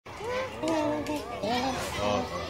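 High-pitched, child-like voices calling out without clear words, their pitch rising and falling.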